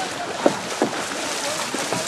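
Water splashing under a steady wash of noise, with scattered distant voices shouting. Two short sharp splashes or knocks come about half a second and just under a second in.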